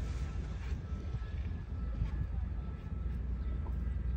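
Wind rumbling on the microphone, a steady low rumble with faint hiss above it.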